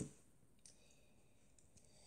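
A single sharp click as the on-screen page is turned, followed by a much fainter tick, then near silence.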